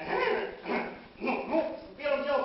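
A person's voice making three short wordless cries, each bending in pitch.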